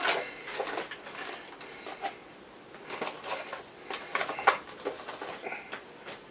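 Action figure packaging being handled and opened: irregular plastic clicks and rustles, with a few sharper clicks about three to four and a half seconds in.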